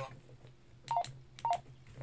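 Keypad beeps from a Baofeng UV-5R handheld radio as its keys are pressed to navigate the menu: two short beeps about half a second apart, each with a faint click of the key.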